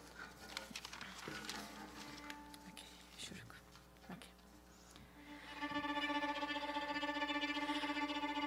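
Faint clicks and small handling sounds, then about five and a half seconds in a musical instrument starts holding one steady note with a fast flutter, the opening of a traditional Iranian song.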